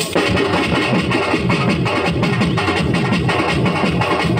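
Dance music with fast, dense drum beats strikes up suddenly and keeps up a quick, driving rhythm.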